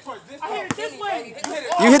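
Several men talking at a distance, with two sharp taps during the talk.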